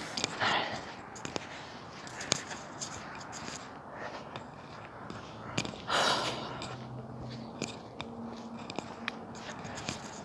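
Rustling and scraping handling noise with scattered sharp clicks, from clothing and the phone or earphone mic rubbing as the wearer walks; a louder rustle comes about six seconds in. A faint, steady low hum joins about seven seconds in.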